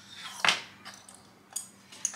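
Hard plastic LEGO pieces clicking and knocking as hands handle a LEGO shark figure and the boat on a tabletop. One clear click comes about half a second in, followed by a few faint ticks.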